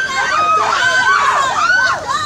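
A group of children shouting and cheering together, many high voices overlapping loudly without a break.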